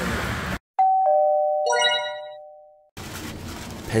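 Laughter cut off abruptly, then an edited-in two-note ding-dong chime effect, high note then low note, with a brief twinkle of higher notes, fading away over about two seconds between moments of dead silence.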